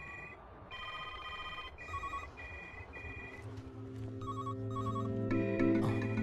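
Electronic telephone ringers trilling in short repeated bursts, more than one phone ringing at once. Background music comes in about halfway through.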